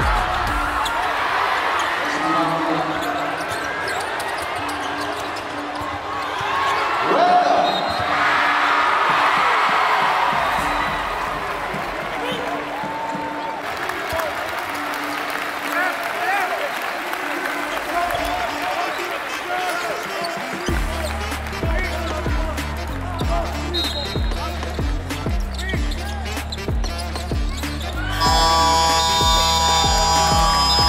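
Basketball game sound in a large arena: a ball bouncing on the court amid voices and shouts, under soft background music. About two-thirds of the way through, the music picks up a heavy, regular bass beat, and it grows louder with brighter electronic tones near the end.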